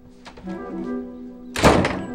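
Film score music holding sustained notes, with a single loud thunk of a door shutting about one and a half seconds in.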